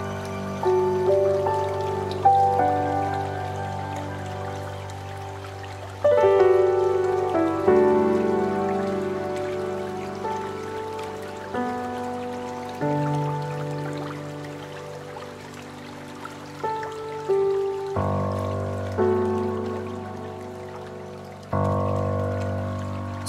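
Slow, relaxing new-age background music: soft held notes that fade out over a low sustained bass, with fresh chords about six seconds in and again near eighteen seconds.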